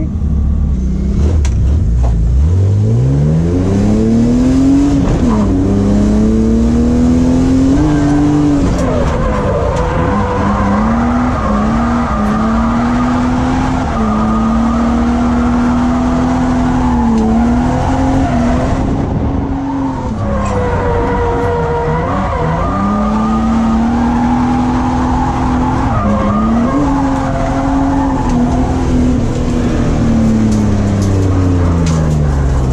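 BMW E36 328is's M52 inline-six heard from inside the cabin, idling, then revving up from about two seconds in and held at high revs, its pitch dipping briefly several times as the throttle is lifted and reapplied. A hiss of tyre noise runs under the engine as the car slides.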